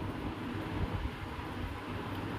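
Steady low background noise, a faint rumble with light hiss, with no distinct events.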